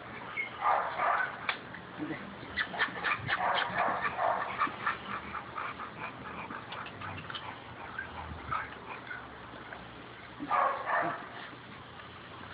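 Pit bull terriers scuffling on a concrete floor: a dog gives short vocal bursts at the start, through the middle and again near the end, over a run of quick clicks and rattles from a chain collar and claws.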